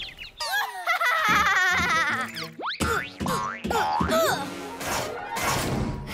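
Cartoon soundtrack of action music with warbling, wobbling electronic effects, followed by a run of sharp hits and springy boings.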